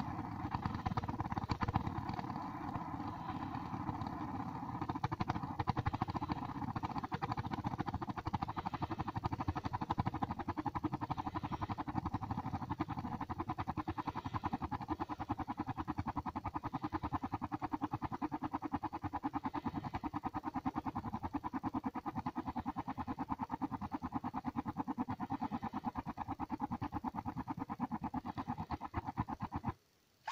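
Portable butane-cartridge gas heater's ceramic burner spluttering in rapid, steady pulses, then stopping near the end as the flame goes out. The heater has a fault that makes it splutter and die after about a minute and a half of running.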